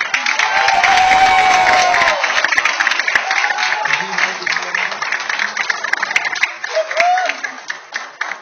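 Loud applause from a roomful of children, many hands clapping at once, with a few voices whooping. The clapping fades toward the end.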